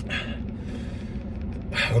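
A man breathing out hard through his mouth against the burn of an extremely hot chili sauce: a noisy exhale at the start that trails off into quieter breathing. Underneath is a low steady rumble in a vehicle cabin, and his voice starts again near the end.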